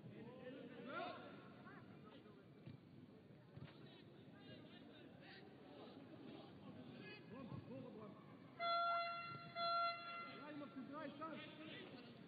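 Open-air football pitch ambience with distant shouts from players and spectators. About nine seconds in, a horn sounds twice, two steady, fairly high-pitched blasts of under a second each, back to back.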